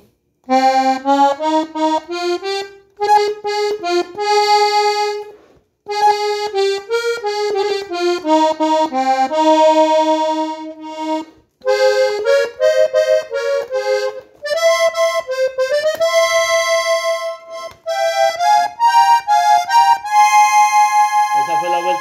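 Piano accordion's treble keyboard playing a norteño intro melody slowly, note by note, in short phrases with brief breaks between them.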